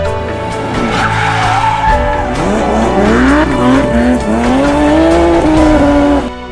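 Intro sound effects of a car engine revving, its pitch climbing in repeated steps, and tyres screeching, laid over a steady music bed.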